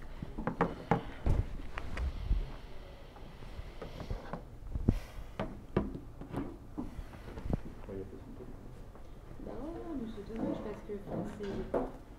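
Indistinct talking with scattered sharp knocks and clicks, several in the first two seconds and a few more around five to eight seconds in; a voice speaks more steadily near the end.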